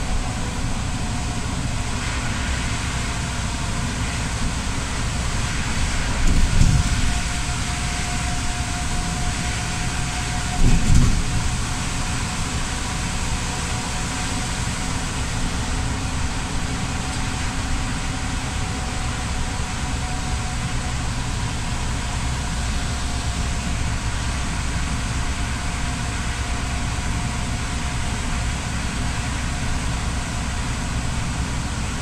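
Steady running noise inside a bus driving on a wet road: engine hum and tyre hiss, with a faint steady whine. Two short, louder low thumps stand out, at about six and eleven seconds in.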